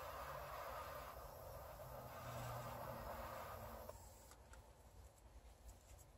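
A faint, steady hiss that stops about four seconds in, leaving near silence.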